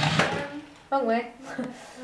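Small electric motor of a battery-powered remote-control toy car whirring briefly on weak batteries, cutting off within the first half second, followed by voices in the room.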